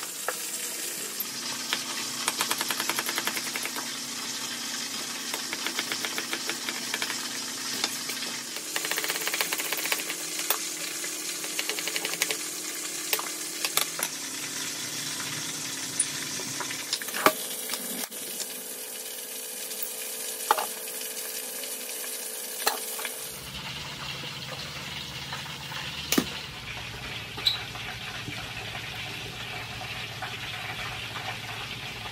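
Kitchen knife chopping a red onion on an end-grain wooden chopping board in quick runs of rapid taps, over the steady sizzle of a pork leg deep-frying in oil. A few sharper single knocks follow in the second half.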